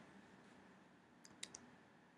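Near silence: room tone, with three faint clicks in quick succession about a second and a half in.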